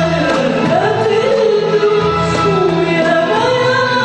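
A woman singing an Arabic song live, with long held, wavering notes over an instrumental ensemble.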